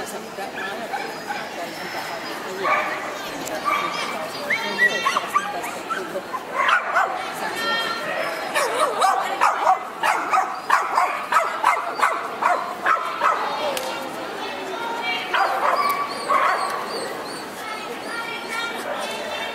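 Dogs yipping and whimpering in many short calls, thickest through the middle seconds, over a background of crowd chatter.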